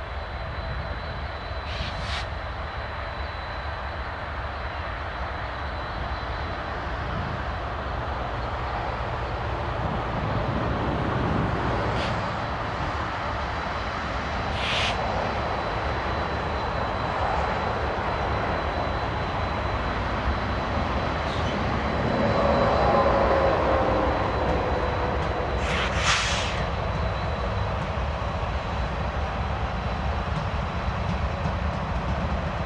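Norfolk Southern diesel locomotives hauling a double-stack container train past, their engines running under a continuous low rumble of wheels on rail. The sound grows louder, peaks about two-thirds of the way in with a whine that falls in pitch, and then settles into the steady rumble of the passing cars.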